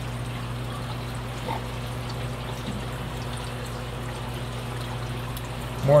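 Aquarium water trickling and bubbling steadily from air-driven sponge filters, over a low steady hum.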